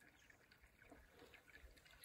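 Near silence, with a faint, soft trickle and a few tiny drips of spring water welling up out of a hole in boggy ground.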